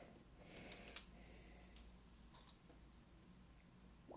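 Near silence with a few faint, light clicks: brass 338 Lapua Magnum cases knocking against each other and their plastic basket as the basket is lowered into an ultrasonic cleaner's tank.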